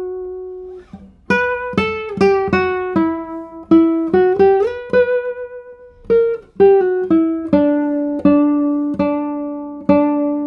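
Solo classical guitar, a 2022 Darragh O'Connell "Torres SE 69" with spruce top and Indian rosewood back and sides, played fingerstyle: a slow melody of single plucked notes that ring and fade one after another. There is a short pause about a second in, and a long held note near the end.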